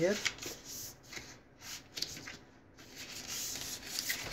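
Thin cardboard of a die-cut box blank rubbing and rustling as hands fold and crease its flaps and shift it on a cutting mat: several short, irregular scrapes with brief pauses between them.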